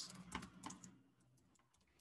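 Typing on a computer keyboard: a quick run of key clicks, stronger in the first second and fainter after.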